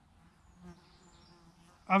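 Faint, steady buzzing of a flying insect, a low hum that holds one pitch.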